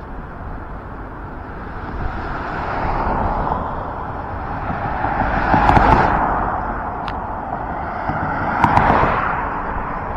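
Road traffic passing on a wide city street: the noise of tyres and engines swells and fades as vehicles go by, loudest about six and nine seconds in.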